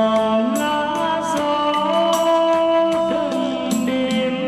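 Male voice singing karaoke through a wireless microphone over a backing track with drums, both played out of a portable Bluetooth karaoke speaker (YS-A20). Long held notes, one wavering toward the end.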